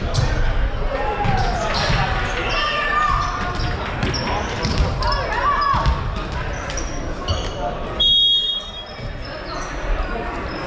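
Many voices chattering in a gymnasium, with a volleyball bounced on the hardwood floor. About eight seconds in, a referee's whistle blows once for about half a second, the signal for the serve.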